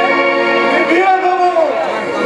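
A voice over stage music, drawing out long held notes that bend slowly in pitch, with a steady musical accompaniment beneath.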